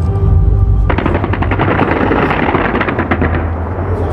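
Aerial fireworks going off in a rapid string of crackling reports that starts suddenly about a second in and thins out near the end, over a low rumble.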